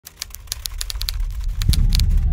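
Typewriter keystroke sound effect: a quick, irregular run of sharp clacks, several a second. A low rumble swells in beneath them near the end.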